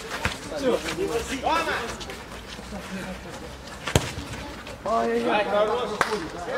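Footballers shouting to each other during play, with a single sharp thud of a football being kicked about four seconds in.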